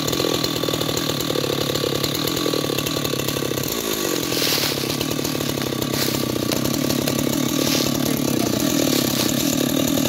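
Husqvarna two-stroke chainsaw running steadily at idle, not yet cutting, its engine note dipping and recovering briefly about four seconds in.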